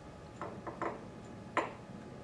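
Four light metallic clicks and taps of a hand tool and fasteners being worked at a Honda CX500's thermostat housing. Three come close together in the first second and a sharper one follows about a second and a half in.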